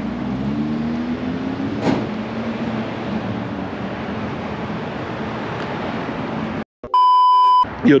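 Steady low hum of traffic and engines, then a sudden cutoff followed by a loud, pure electronic beep lasting under a second, like an editor's bleep.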